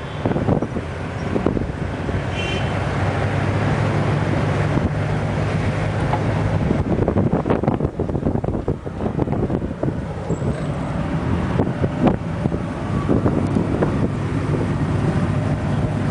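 A military Humvee's engine droning steadily as it drives, heard from the open gunner's turret, with wind on the microphone and scattered knocks and rattles from the vehicle.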